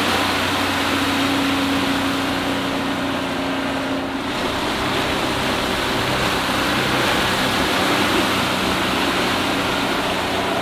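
Honda 50 hp four-stroke outboard running steadily with the RIB up on the plane, under a steady rush of water and wind.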